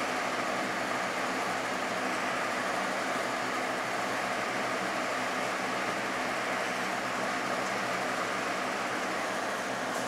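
Electric fan running steadily: an even rushing noise with a low hum under it.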